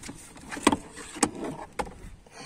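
Three sharp knocks about half a second apart, hard panels in a car's boot being handled.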